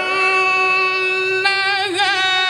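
A man reciting the Quran in melodic tajwid style through a microphone, holding one long high note. Near the end the note breaks into a quick wavering ornament.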